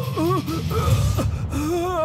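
Film background score: a voice sliding and wavering in pitch over a dense, heavy bass.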